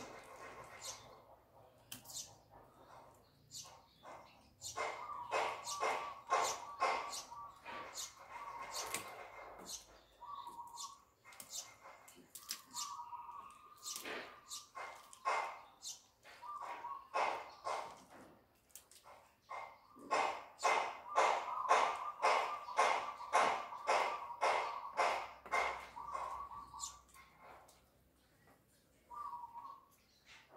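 Knife chopping fish on a round wooden chopping block, in runs of sharp strokes at about two to three a second, one run early on and a louder one about twenty seconds in. A steady whining tone comes and goes alongside the chopping.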